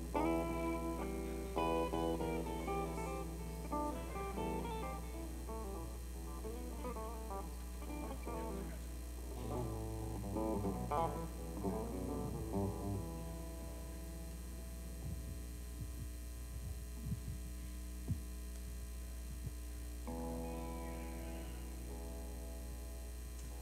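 Electric guitar played through an amplifier, loose single-note blues licks with bent notes for the first dozen seconds. Then only a steady amp hum with a few soft knocks, until a chord rings out near the end.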